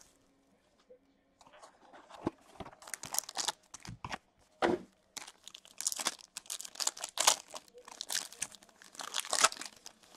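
Clear plastic shrink wrap crinkling as it is stripped off a Topps Inception trading card box, then the box's plastic pack wrapper being torn open, in irregular crackles and rips that start about a second and a half in.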